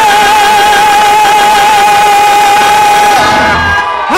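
Gospel choir holding one long, loud note with vibrato, which cuts off a little after three seconds in as the song ends.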